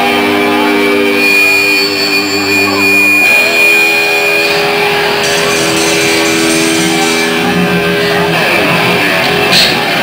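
Live rock band playing loudly with electric guitars holding long sustained chords, the chord changing about three seconds in and again about eight seconds in.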